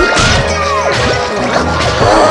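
Several cartoon soundtracks playing over one another: background music mixed with cartoon sound effects, sliding whistle-like tones and a crashing hit near the start.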